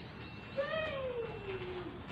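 A cat meowing once: a single drawn-out call that starts about half a second in, rises briefly, then falls steadily in pitch for over a second.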